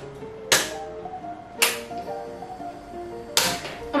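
Portable butane gas stove's piezo igniter knob clicked three times, sharply, the burner lighting by the last click. Background music plays throughout.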